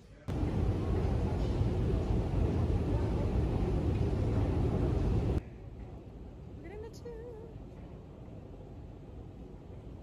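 A loud rumbling noise, strongest in the bass, starts suddenly and cuts off abruptly after about five seconds. After a cut comes the quieter steady background of an Underground station escalator, with one brief wavering tone near the middle.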